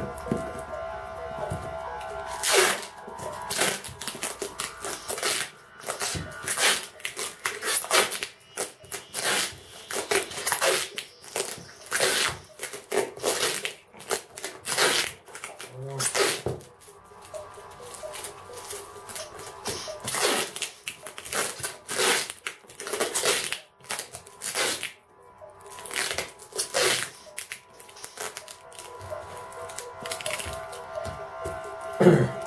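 Clear packing tape being pulled off its roll in repeated short ripping strips and pressed around a plastic-wrapped cardboard box. Faint steady music runs underneath.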